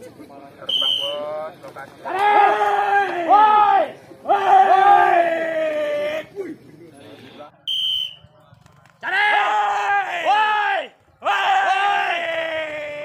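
Men shouting long, loud, drawn-out calls, four of them in two pairs, with a short high whistle-like tone just before each pair: pigeon handlers calling the racing males down to the female pigeons they hold up as lures.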